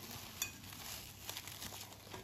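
Plastic cling film crinkling faintly as it is pulled and stretched over a glass bowl, with small crackles and one sharper crackle about half a second in.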